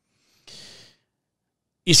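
A man's single short breath into a close microphone, about half a second long, between stretches of speech.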